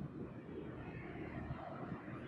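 Faint steady background rumble and hiss, with no clear distinct sound standing out.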